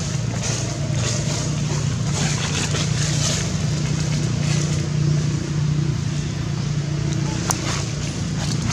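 A steady low hum of a running engine, with a single sharp click near the end.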